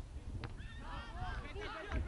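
Several voices shouting short overlapping calls during play on a football pitch, over a low rumble of wind on the microphone.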